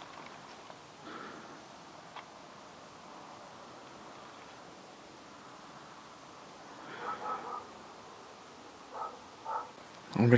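Quiet rustling and a few light clicks as someone walks through long grass and weeds, with a few short, faint sounds near the end.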